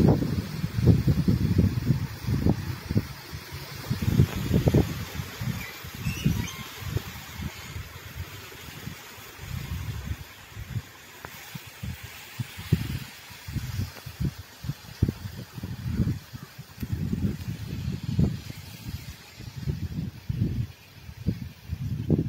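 Strong, gusty cyclone wind: irregular low blasts buffet the phone's microphone every second or so over a steady rush of wind through palm fronds and trees.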